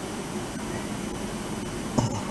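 Steady hiss and low hum of an open broadcast audio line, with no voice coming through: the remote correspondent's audio is not reaching the studio.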